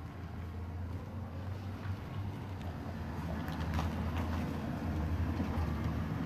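Outdoor town-street ambience: a low, steady rumble that slowly grows louder, with a few faint clicks about halfway through.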